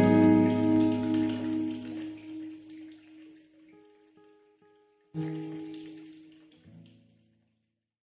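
Acoustic guitar closing out a song. A chord rings and fades over about three seconds, three soft single notes follow, and a last chord comes in about five seconds in and dies away within two seconds.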